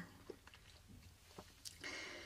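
Near silence with a few faint mouth clicks, then a soft inhale near the end.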